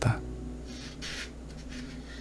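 Paper rustling as fingers handle the page of a paperback book: two short soft rustles about a second in, as the page is taken up to be turned.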